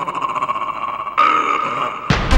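Breakdown in a psytrance track: the kick drum and bassline drop out, leaving a sustained synthesizer texture, with a brighter layer coming in just over halfway through.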